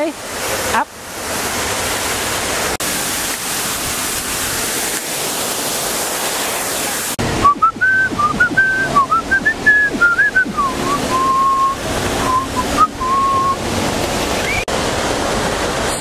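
Steady rushing of a large indoor waterfall for about the first seven seconds. Then, after an abrupt change, a person whistles a short wavering tune for about six seconds over softer background noise.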